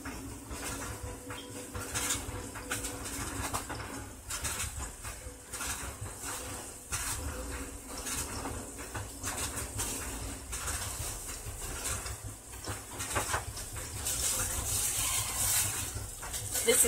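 Turkey burgers frying in a skillet: a sizzle with frequent small pops and crackles, and a faint steady hum through the first few seconds.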